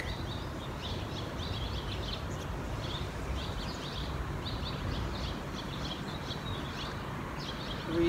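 Small birds chirping in short, high notes again and again, over a steady low background rumble.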